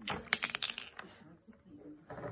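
Plastic rattle ball on a baby activity toy being turned and shaken by a baby's hands: a quick cluster of small rattling clicks with a bright metallic ring in the first second, then trailing off.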